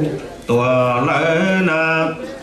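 A man chanting a Hmong txiv xaiv funeral song, unaccompanied: one long phrase on held notes starting about half a second in, the pitch stepping up briefly and dropping back near the end.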